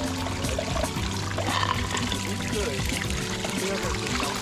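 Water pouring and trickling over the rocks of a small pond waterfall, with background music playing over it.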